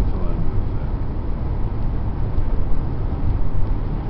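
Steady low road and engine rumble heard inside the cabin of a 2002 Chevrolet Impala cruising at road speed.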